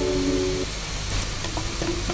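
Background music holding a sustained chord that stops about half a second in, followed by a steady hiss with a few faint clicks.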